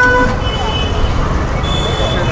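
Street traffic with vehicle horns tooting over a steady low traffic rumble. A short horn note sounds right at the start, then two higher-pitched toots follow, one about half a second in and one near the end.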